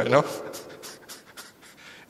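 A man's soft, breathy laughter: a run of short breathy pulses right after a spoken phrase, fading away.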